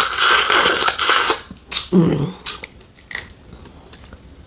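Loud sucking slurp of snow crab meat being drawn from the shell, lasting about a second and a half. It is followed by a short wet mouth sound and a few sharp clicks of crab shell being handled.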